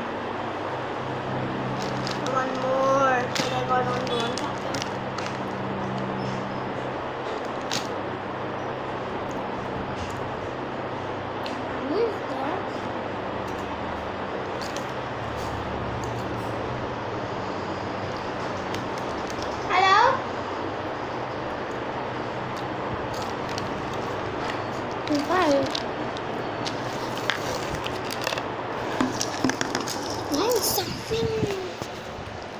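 A steady background hiss with a faint low hum, broken by a few short high vocal sounds from a child, one of them a quick rising squeal.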